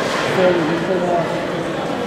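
People talking: a voice or two over a general murmur of chatter.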